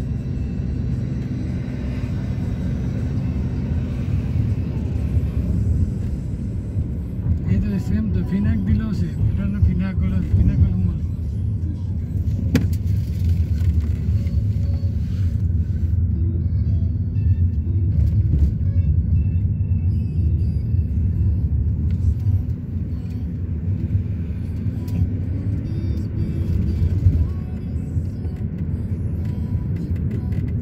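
Steady low rumble of a car's engine and tyres heard from inside the cabin while driving on the road. A voice is heard briefly about eight to eleven seconds in.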